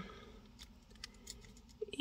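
A few faint metal clicks from jewellery pliers gripping and bending stiff 20-gauge craft wire as a loop is turned.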